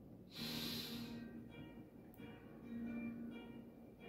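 A person breathing in deeply with an audible rush of air lasting about a second, soon after the start, as part of a guided breathing exercise. Faint soft music with long held notes plays underneath.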